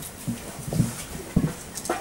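Djembe hand drums being handled and set down on the floor, giving a few scattered low, hollow thumps and a sharper knock near the end.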